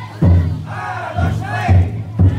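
Large taiko drum in a futon daiko festival float struck three times with deep booms, while a crowd of bearers calls out together.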